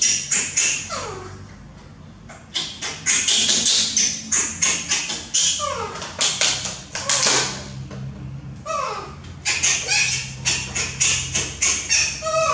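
Quick runs of clicks and taps from a plastic baby bottle, water bottle and formula tin being handled as milk is mixed, with a baby macaque giving short cries that fall steeply in pitch, three times.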